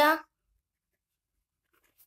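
The end of a spoken word, then near silence, with a few very faint scratches of a ballpoint pen writing on notebook paper near the end.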